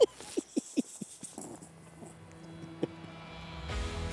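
A man laughing in a few short bursts during the first second or so, over background music that carries on through the rest and swells near the end.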